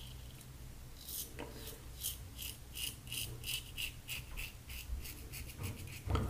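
Standard aluminum double-edge safety razor with a Kai blade scraping through lathered stubble on the cheek, across the grain, in a run of short, quick strokes, about three a second, each a crisp rasp. The strokes start about a second in and stop just before the end.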